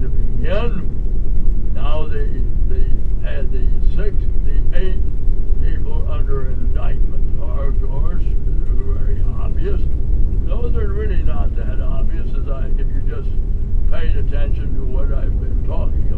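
Indistinct talking over the steady low rumble of a moving vehicle.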